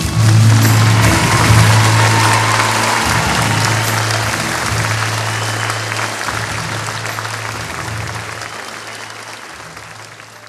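Concert audience applauding as the song ends, loudest at the start and fading steadily away, with a low hum underneath.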